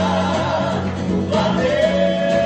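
A choir of men singing a gospel hymn through a sound system, with held, sustained notes over instrumental accompaniment.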